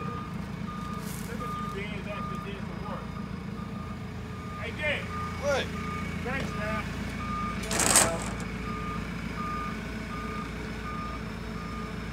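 Forklift back-up alarm beeping about twice a second over the steady rumble of its running engine, with one short hiss about eight seconds in.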